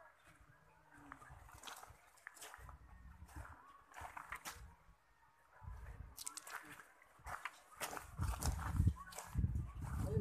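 Footsteps crunching on a gravel path, with low rumbling on the microphone that grows louder near the end.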